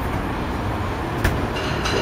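Steady low outdoor background rumble, with one sharp click about a second in.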